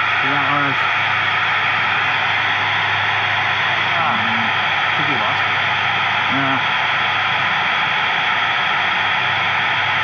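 Steady FM receiver static hiss from a handheld radio's speaker, squelch open on the space station's UHF downlink, with a few faint, broken voice fragments coming through: the repeater's signal is fading out.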